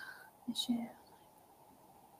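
A woman's faint, brief whispered vocal sounds, like a breath and a soft murmur, in the first second, then near silence: quiet room tone through a webinar microphone.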